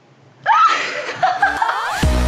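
A woman's high-pitched laughter bursts out about half a second in and goes on in quick, wavering peals.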